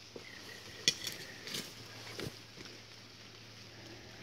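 Faint handling noise from a dug-up metal canteen being turned in the hand, with a few light knocks and clicks.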